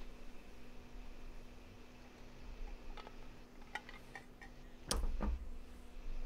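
Quiet room tone through a desk microphone: a steady faint hum with a few soft ticks, and one brief bump about five seconds in.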